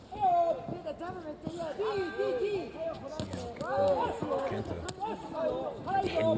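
Several men's voices shouting short calls over one another at ringside during a kickboxing exchange. A couple of sharp slaps of strikes landing cut through, one about three seconds in and another near five seconds.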